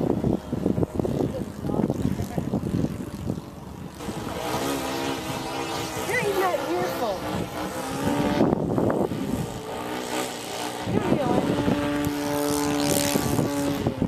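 The four-stroke YS 150 glow engine of a Hangar 9 Showtime 90 radio-control plane in flight overhead. Its drone swings up and down in pitch as the plane manoeuvres, and holds steady near the end. Uneven rumbling wind noise runs beneath it.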